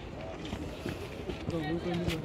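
Indistinct talk from several people, with one voice drawn out on a steady pitch in the second half.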